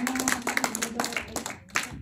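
A congregation clapping their hands in applause, dense and irregular, thinning out and dying away near the end.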